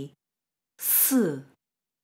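A woman's voice pronouncing the Mandarin initial s (the syllable si) once, about a second in: a hissed s running into a short vowel that falls in pitch.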